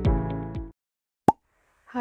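Electronic intro music that cuts off under a second in, then a short silence broken by a single brief pop, a sound effect closing the title card. A woman's voice starts at the very end.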